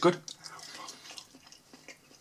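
Faint, close-up chewing of a mouthful of soft potato pancake, with small wet mouth clicks, after a single spoken word at the start.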